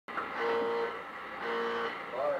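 A horn-like tone with many overtones sounds twice, about half a second each time.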